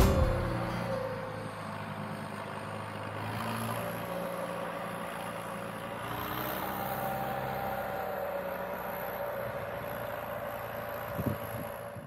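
John Deere tractor's engine running at a distance, a steady even drone as the tractor drives away across the field.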